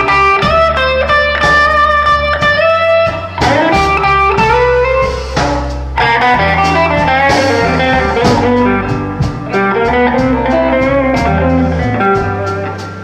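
Live electric blues band: a Stratocaster-style electric guitar plays an instrumental solo of single-note lines with bent notes, over bass and drums.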